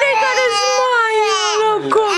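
Infant crying: one long cry held at a nearly even pitch, falling slightly and dipping briefly near the end.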